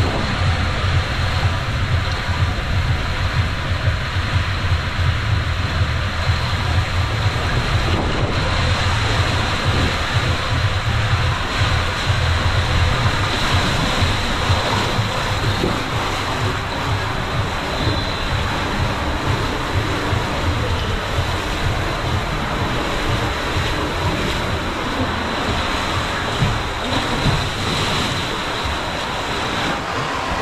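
Water rushing down an enclosed body waterslide tube as a rider slides through it: a loud, steady rush with a deep rumble underneath.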